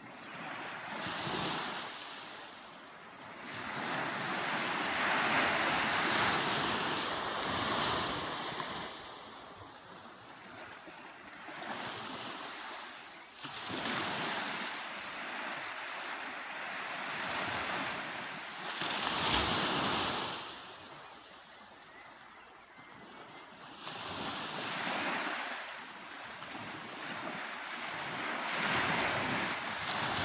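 Small sea waves breaking and washing up a sandy beach. The hiss of surf swells and fades in surges every few seconds.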